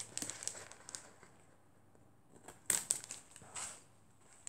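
A sheet of sticker paper rustling and crinkling as it is handled, in a few short bursts, the loudest about three seconds in.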